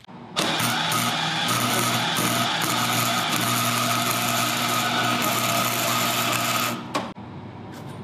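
Electric arc welder laying one continuous bead on steel, a steady crackling buzz with a low hum, starting just after the beginning and cutting off suddenly about a second before the end.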